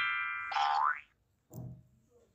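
Intro sound effects: a bright chime fading out, then a short rising cartoon-style glide about half a second in and a brief lower sound near the end.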